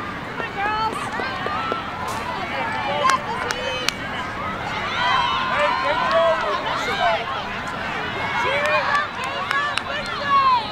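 Many voices of girls' lacrosse players and people on the sidelines calling out over one another on an open field, with no single speaker clear. A few sharp clicks are heard about three seconds in.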